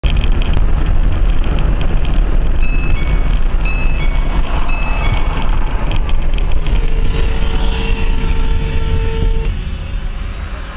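Road and engine noise of a moving car, recorded by a dashcam inside it: a loud, steady low rumble. A short run of alternating two-note electronic beeps comes in about a third of the way through, and a steady pitched tone is held for about three seconds near the end.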